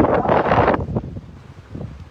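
Wind buffeting a phone microphone, a loud rushing that dies down about a second in.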